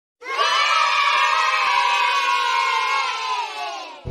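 A group of children cheering together in one long held shout that falls slightly in pitch and fades out near the end.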